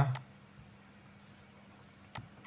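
Faint room tone with a steady low hum, just after a man's voice trails off at the very start.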